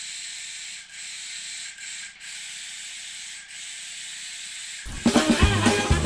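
Gravity-feed air spray gun hissing steadily as it sprays paint, cut by a few short breaks as the trigger is eased off. Music with a beat comes in about five seconds in.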